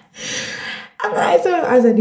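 A woman laughing: a sharp, breathy gasp, then from about a second in a drawn-out voiced laugh falling in pitch.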